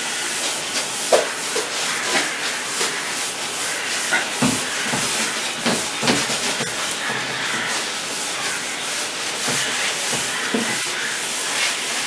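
Cloth rubbing across a whiteboard as it is wiped clean: a steady, hissing swish with a few faint knocks.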